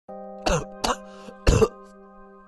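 A man coughing three times over a steady held chord of background music, the last cough the loudest and longest: the chesty coughing of someone who is sick.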